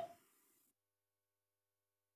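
Near silence: the last of a man's voice dies away at the very start, then the sound track goes completely silent.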